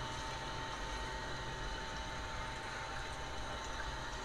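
Homemade feed-mixing machine running steadily as it stirs dry duck-feed mash: a low, even hum with a faint steady whine.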